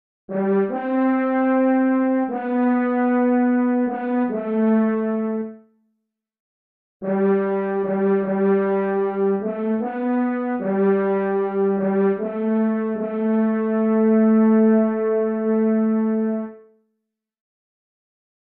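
Solo French horn, a computer-rendered horn voice played back from the score, playing a slow melody unaccompanied. It plays two phrases of repeated and held notes, with a rest of about a second between them, and stops about a second before the end.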